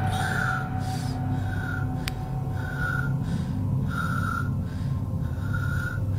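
Eerie background soundtrack: a steady low drone with soft, breath-like swells repeating roughly every second, and a single sharp click about two seconds in.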